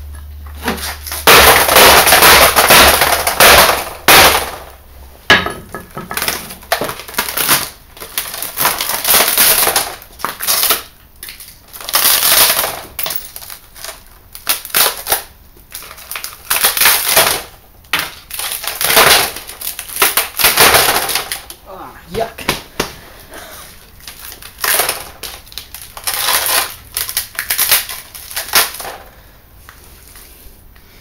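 Shattered glass and plastic layers of an LCD monitor panel crunching and crackling in about a dozen irregular bursts, the longest and loudest lasting about three seconds near the start.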